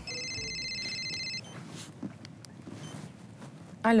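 Mobile phone ringing: a high electronic ring lasting about a second and a half, then only faint room sound.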